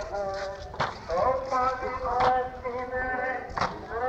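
Shia latmiya mourning chant: a male voice chanting a melodic lament with long held notes, while mourners beat their chests in unison. Three sharp slaps fall about a second and a half apart.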